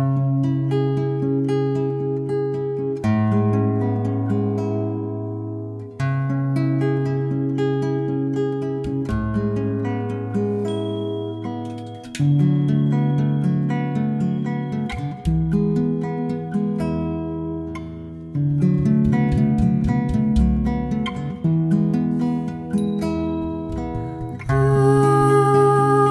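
Acoustic guitar music starts from silence, plucked notes ringing over low bass notes as a song's introduction. Near the end a voice comes in, humming a held, wavering note.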